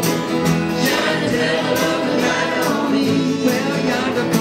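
Small live band playing a country-folk song, with electric and acoustic guitars, keyboard and upright bass over a steady strummed beat.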